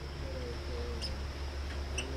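American red squirrel giving short, high chirps about once a second, a sign that it is agitated. A steady high drone and a low hum run underneath.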